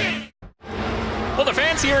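The tail of a rock music bumper cuts off a fraction of a second in, leaving a brief silent gap at a broadcast edit. Steady outdoor crowd background noise then comes in, and a man starts speaking near the end.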